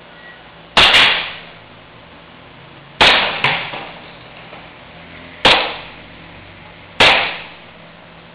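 A pistol fired four times at a target, sharp shots about two seconds apart, each dying away in a short echo.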